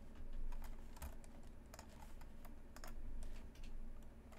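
Computer keyboard keys being tapped, about fifteen faint, irregular clicks.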